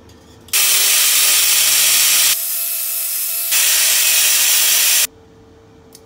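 A loud, steady hiss of rushing noise that starts and stops abruptly, lasting about four and a half seconds, with a drop in level for about a second in the middle.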